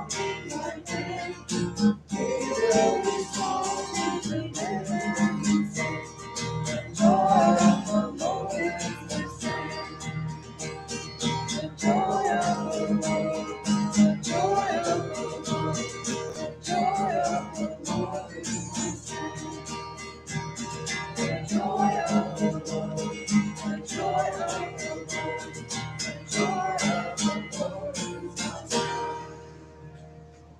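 A congregational song led on a strummed acoustic guitar, with singing over the steady strumming. The song ends about a second before the close.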